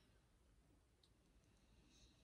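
Near silence: faint room tone, with one tiny click about halfway through.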